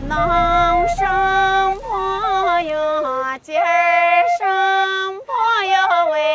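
A woman singing a folk melody in long held high notes, sliding up and down between them, with short breaths between phrases.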